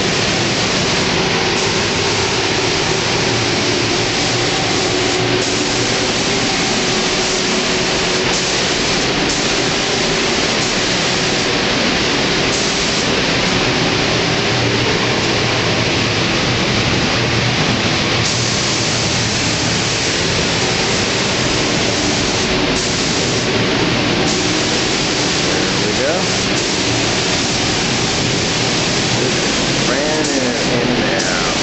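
Steady, unbroken rush of air in a paint spray booth: the booth's ventilation airflow together with the hiss of a compressed-air spray gun laying on clear coat.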